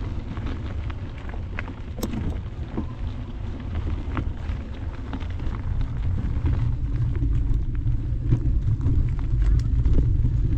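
Mountain bike riding along a dirt singletrack trail. Wind rumbles on the camera microphone and the tyres roll over dirt and small rocks, with scattered clicks and rattles from the bike. The sound grows louder in the second half.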